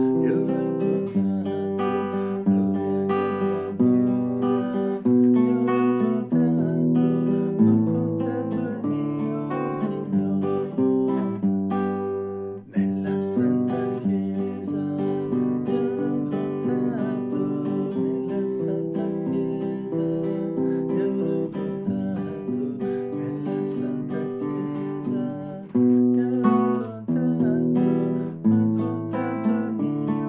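Classical guitar strummed in steady chords, accompanying a man singing a song.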